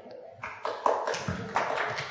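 Irregular knocks, bumps and rustling from a group of people getting to their feet, starting about half a second in and getting busier.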